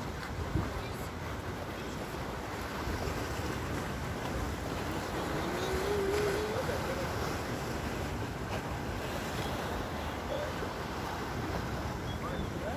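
Steady wind noise on the microphone with open-water ambience. A faint tone rises briefly about halfway through.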